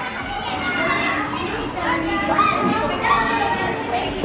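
A lively babble of several people talking and calling out excitedly, with high-pitched voices, as visitors play on the swings.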